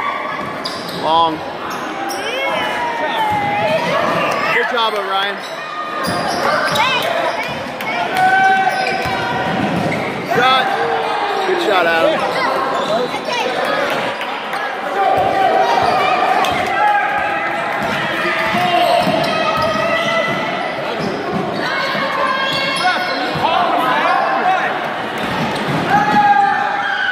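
A basketball bouncing on a hardwood gym floor, with many short knocks, among the steady talk and calls of players and spectators, echoing in the hall.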